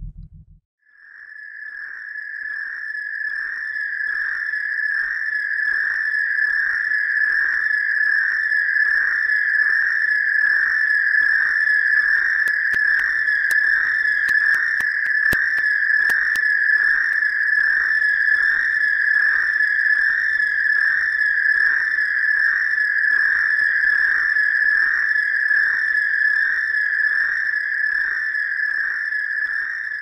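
A sustained high-pitched ringing tone that swells in about a second in and then holds steady, wavering slightly, with a faint regular pulsing beneath it and a few faint clicks midway.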